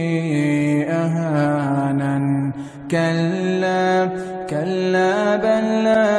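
Male voice reciting the Quran in melodic tajwid style, holding long notes that glide and waver in pitch, with a short break for breath about two and a half seconds in.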